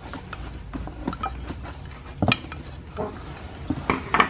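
Light clicks, clinks and rustles of small wrapped ornaments and packing material being handled and unwrapped, with a sharper click about two seconds in and another near the end.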